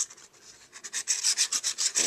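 Nozzle of a liquid glue bottle scraping across kraft cardstock as glue is drawn on in lines: a run of short, scratchy rubbing strokes, sparse at first and quick and dense in the second half.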